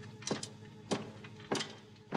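Three boot footsteps on a hard floor, evenly spaced a little over half a second apart, over a faint steady hum.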